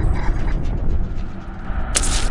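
Sound effects of an animated logo intro: a deep rumble under a run of fast mechanical ratcheting clicks, ending in a sharp hissing hit as the logo glitches.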